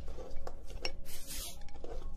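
Tarot cards being handled and laid down: a few light taps and clicks, with a brief sliding rustle about halfway through.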